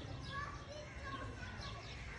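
Distant voices, like children playing, over a steady low rumble, with short high bird chirps scattered through.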